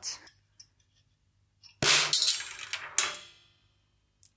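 Marbles released from the Marble Machine X's marble drop striking the drum, two sharp metallic-ringing hits about a second apart, with a few faint clicks before them. It is a test drop to check where the marbles land after the drop's guide was bent with pliers.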